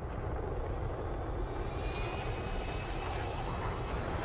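Fighter jet engines and rushing air in a film mix: a steady low rumble, with a high engine whine coming in about halfway through.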